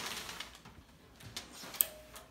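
Rustling of the white wrapping being pulled off a snare drum, then a few light clicks and one sharp tick near the end as the drum is picked up and handled.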